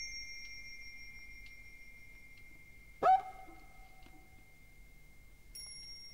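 Bell-like chimes in a sparse musical opening: a bright struck tone rings on and slowly fades, a louder, lower tone with a short upward slide comes in about three seconds in, and another bright chime is struck near the end.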